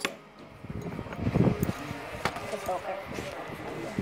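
Handling noise from metal medals being fiddled with close to the microphone, with a sharp click at the start and another about two seconds later, and a brief murmured voice.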